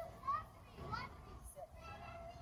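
Children's voices in the distance: short, high calls and shouts with rising and falling pitch.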